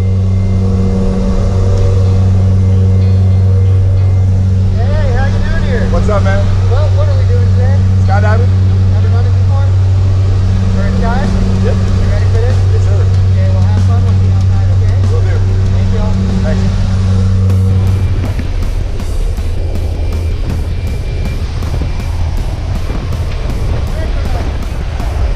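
Steady drone of a jump plane's turboprop engine and propeller heard inside the cabin, with raised voices over it for a few seconds. About three-quarters of the way through, the drone gives way to a rougher rush of wind as the jump door is open.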